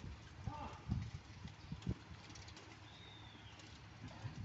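Dairy barn ambience: a few low thumps and shuffles from Holstein cows moving about on the muddy yard, with short bird calls: a brief call about half a second in and a thin, slightly falling whistle about three seconds in.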